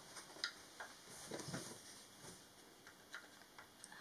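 Faint, scattered light clicks and taps of small plywood and dowel parts of a wooden kit knocking together as they are fitted by hand.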